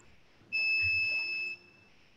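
A single steady, high-pitched electronic beep-like tone, lasting about a second and a half and starting about half a second in.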